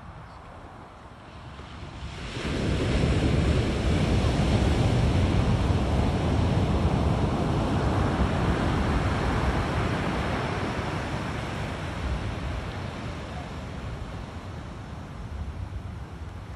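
Ocean surf on a sandy beach: a wave breaks about two and a half seconds in, stays loud for several seconds, then its wash slowly fades.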